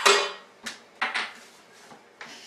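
Wooden Jenga-style tower blocks clacking against each other as they are handled: one loud knock at the start, then a few lighter clicks.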